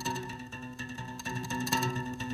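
Quiet acoustic instrumental passage between sung lines: held notes ringing under a light, even beat of soft strikes.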